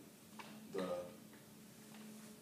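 Quiet room tone with a steady low hum, broken by a single spoken word about a second in and a faint click just before it.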